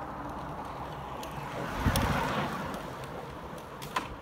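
Time-trial bicycle passing close by: a rush of tyre and air noise that swells about two seconds in and fades as the rider moves away. A short sharp click comes near the end.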